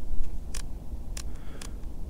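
Command dial of a Nikon Z7 mirrorless camera clicking through its detents as the ISO is raised from base, several separate sharp clicks over a steady low rumble.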